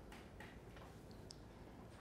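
Near silence: quiet room tone with a few faint, scattered ticks.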